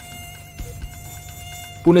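Mosquito buzzing sound effect: a steady, thin, high whine.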